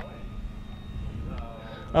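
Brushless electric motor and propeller of a BlitzRC Works 1100 mm Spitfire Mk24 model running on a 3S pack as it climbs out just after take-off: a faint, steady whine over low outdoor rumble.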